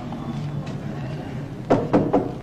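Knocking on a door: two sharp knocks near the end, over a steady low background hum.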